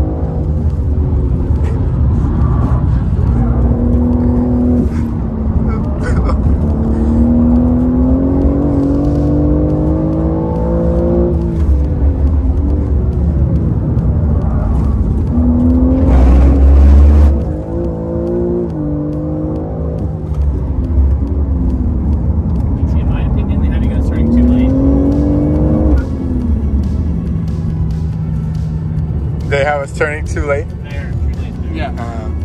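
BMW M car's engine pulling hard through the gears, heard from inside the cabin: the pitch climbs for a few seconds and drops at each upshift, over a steady rumble of road and tyre noise.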